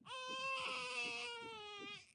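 Newborn baby crying in the film soundtrack: one long wail held for nearly two seconds, sagging slightly in pitch before it breaks off.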